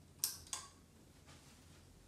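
The pull-chain light switch of a Hunter Oakhurst ceiling fan's light kit, clicking as the chain is pulled to switch the lights on. It makes two sharp clicks about a third of a second apart.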